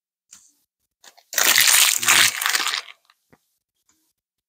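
A booster-pack wrapper crinkling: one loud, crunchy rustle lasting about a second and a half in the middle, with a few faint ticks before and after it.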